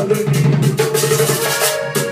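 Vallenato instrumental passage between sung verses: a diatonic button accordion plays the melody over a hand-struck caja drum and the steady scraping of a metal guacharaca.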